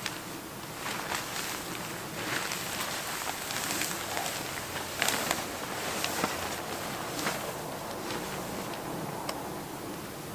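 Tarp fabric rustling and crinkling in irregular bursts as it is handled from inside and pushed up on a trekking pole.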